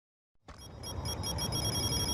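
A high-pitched electronic ringing, pulsing rapidly several times a second over a low rumble, starting about half a second in and growing steadily louder.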